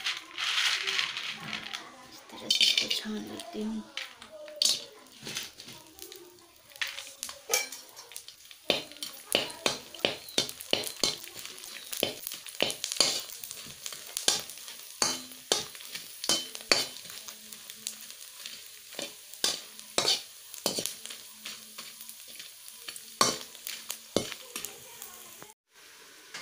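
Sun-dried rice-flour crisps (chadodi) deep-frying in hot oil in a kadhai. They sizzle loudly as they go in, then keep sizzling more faintly while a spoon stirs them, with many sharp scrapes and taps of the spoon against the pan.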